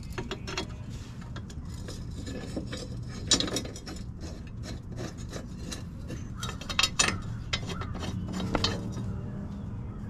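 Metal clicks and clinks as a sharpened rotary mower blade and its bolts are fitted back onto the blade holder by hand, with a few louder knocks about three, seven and eight and a half seconds in, over a steady low hum.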